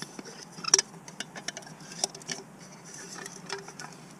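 Light clicks and taps of a small camping pot being handled, its folding handle and rim knocking, with the sharpest click about three-quarters of a second in.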